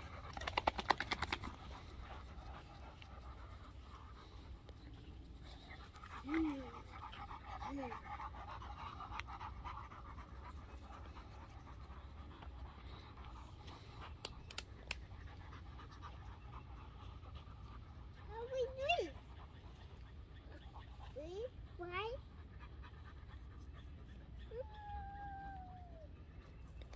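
A dog panting fast and close for about a second and a half at the start, then softer. A few faint, short calls that rise and fall in pitch come later, with long quiet gaps between them.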